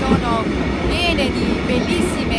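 Heritage passenger train coach running along the rails, a continuous rumble heard from inside the carriage, with a woman's voice over it.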